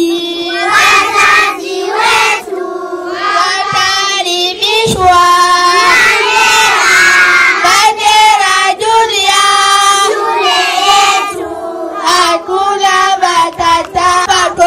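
A group of young schoolgirls singing a song together in unison, with short breaks between phrases.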